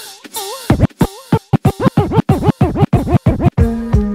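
DJ scratching a record on a turntable: quick back-and-forth strokes, about four or five a second, sharply cut in and out at the mixer. A wavering held note precedes the scratches, and near the end a new track with a falling bass line drops in.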